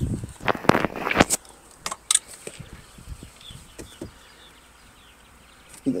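Handling noise: a few sharp clicks and knocks in the first two seconds or so, then a faint, steady background.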